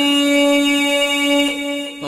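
Voice holding one long, steady sung note at the end of a line of a Pashto tarana, fading near the end before the next line starts.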